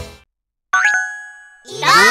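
A bright cartoon chime sound effect rings once and fades over about a second. Near the end a cartoon voice calls out.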